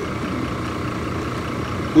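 Steady hum of an engine idling, even in level throughout.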